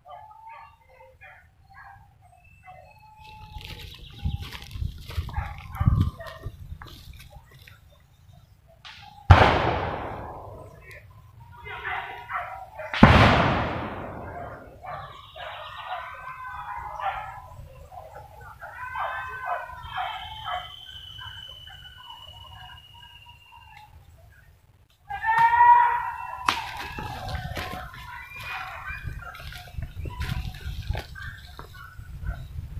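Voices calling out across the forest, mixed with animal or bird calls, and two loud sudden bangs about four seconds apart, each dying away over about a second.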